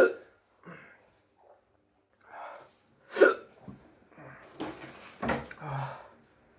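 A man hiccuping and breathing hard from the burn of a Trinidad Scorpion Butch T chilli pepper he has just eaten: a sharp hiccup right at the start and another about three seconds in, with shorter breaths between and towards the end.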